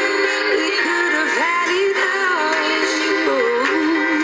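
Pop song with a woman singing a wavering melody over full backing music. It sounds thin, with the bass missing.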